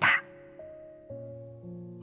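Soft background music of sustained notes under a narrated reading, with the chord changing about every half second. A spoken word trails off right at the start.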